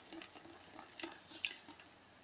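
Wire whisk beating thick, heavy-cream-consistency crêpe batter in a ceramic bowl: a faint run of quick, wet strokes.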